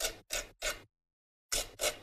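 A small spatula scraping coloured stencil paste through a stencil onto card, in short strokes: three quick scrapes, a pause of about half a second, then two more.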